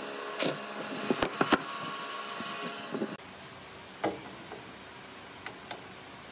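Hand chisel working a mortise in a solid wood block: a quick run of sharp clicks and cracks as wood is pared and chips break away, over a steady machine hum. About three seconds in, this gives way abruptly to a quieter steady hum with a few light knocks.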